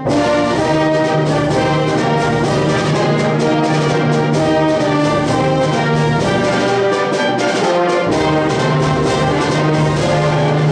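A concert band playing a sustained, brass-heavy passage of held chords over a steady bass note.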